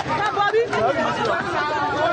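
Several voices talking over one another in a crowd.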